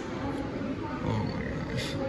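Indistinct speech.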